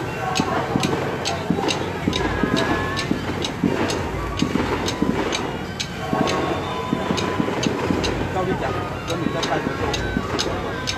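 Crowd chatter over a steady procession percussion beat: short, sharp metallic strikes about three times a second, continuing without a break.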